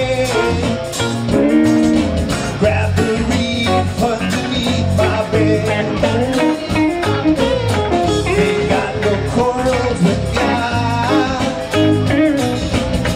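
Live rock band playing: electric and acoustic guitars, bass guitar and drums, with a singer's voice over them.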